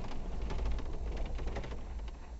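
Brush and branches scraping and ticking along the body of an off-road vehicle: a quick run of sharp clicks and scratches over the vehicle's low rumble. The scraping is marking up the paint.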